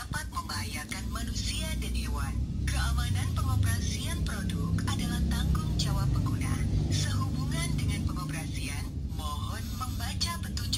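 Recorded voice prompt playing from the Philips UV-C disinfection lamp's built-in speaker, warning that its UV-C light can harm people and animals and that safe operation is the user's responsibility. A steady low rumble runs underneath.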